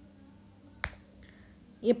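A single sharp click about a second in, over quiet room tone; a voice begins right at the end.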